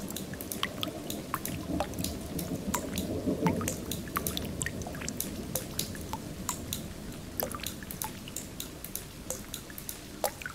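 Water dripping and splashing: many irregular small plinks of drops over a low, steady wash.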